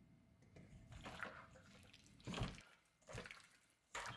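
Gloved hand mixing raw walleye pieces in a wet egg-white and cornstarch coating in a stainless steel bowl: a few faint, short squelching sounds.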